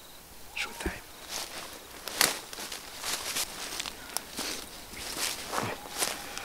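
Footsteps through forest-floor leaves and twigs, about two irregular steps a second.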